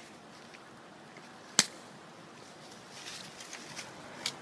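A single sharp slap about one and a half seconds in as a G10 tanto knife slashes into a plastic-wrapped pork target, followed near the end by faint crinkling of the plastic wrap as it is handled.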